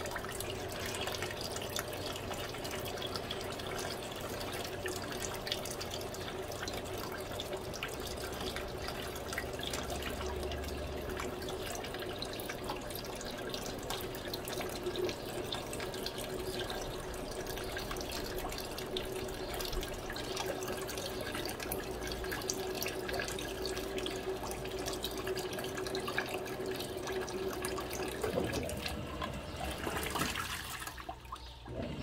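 Electrolux Turbo Economia LTD06 top-load washing machine filling its tub with water for the fabric-softener rinse: steady running water with a steady hum, which stops near the end as the agitator starts to churn the load.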